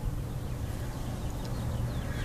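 Ford 429 Thunderjet V8 idling with a steady low hum.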